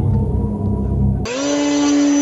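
RC model aircraft motor sounds: first a low, rumbling engine run with the model on the ground, which cuts off suddenly about a second in. It is replaced by a steady high-pitched motor drone that rises briefly at its start and then holds, from a model plane hovering nose-up on its propeller.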